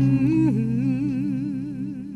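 A voice holds a long note with wide, even vibrato as the end of a song, slowly fading out. The bass and drums of the backing music stop just as it begins, and the note dips in pitch about half a second in.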